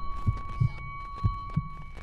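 Cinematic intro sound effect: low heartbeat-like double thumps, about one pair a second, over a faint steady high ringing tone.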